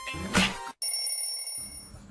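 Animated channel-intro music and sound effects: a loud musical sting that cuts off abruptly under a second in, then a steady high electronic ringing tone like a bell.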